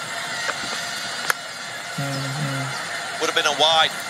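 Cricket bat striking the ball: a single sharp crack about a second in, over the steady background of a match broadcast. A man's voice follows shortly after, and talking begins near the end.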